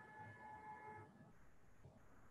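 Near silence: faint room tone, with a faint steady tone of several pitches that stops about a second in.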